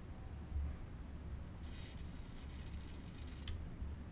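Soldering iron on a fluxed solder joint of a small battery's BMS board: a soft crackling hiss of flux and solder for about two seconds, starting about a second and a half in and stopping abruptly, over a steady low hum.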